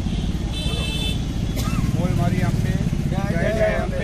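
A vehicle engine running with a low pulsing rumble close by on the street, with men's voices talking over it. A short high-pitched beep sounds about half a second in.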